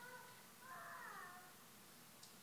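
A faint high-pitched cry, heard twice: a short one at the start, then a longer one that falls in pitch.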